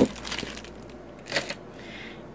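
Clear plastic bag crinkling as lip gloss tubes are handled in it, with a sharp knock right at the start and a second short crinkle about a second and a half in.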